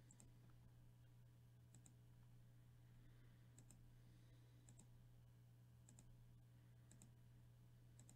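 Faint computer mouse clicks, repeated about once a second, as a web page's randomize button is clicked over and over, over a low steady hum in otherwise near silence.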